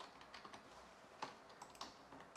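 Faint, scattered keystrokes on a computer keyboard, a few separate taps with the sharpest a little over a second in.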